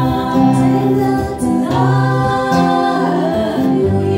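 Women's voices singing a Karen-language song together in harmony through microphones, over steady low backing notes.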